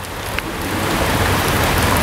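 A steady rushing hiss with no distinct tones, growing steadily louder.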